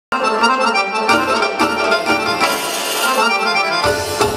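Egyptian baladi dance music with an accordion playing the melody, starting abruptly right at the beginning, with a few sharp accents along the way.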